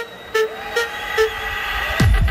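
Techno breakdown with the kick drum dropped out: a short, horn-like synth stab repeats about every 0.4 seconds while a noise riser builds in loudness. The heavy kick drum comes back right at the end.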